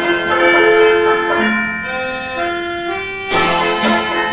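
Music from a mechanical music instrument: a slow line of held, steady notes, each lasting about half a second to a second, then louder sharp strikes that come in near the end.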